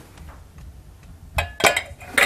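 A ceramic mixing bowl set down on a stainless steel saucepan, clinking twice in quick succession about a second and a half in.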